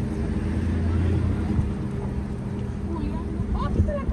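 Pickup truck's engine running as it rolls slowly along a dirt lane, heard from inside the cab as a steady low hum, with a deeper rumble through the first three seconds or so.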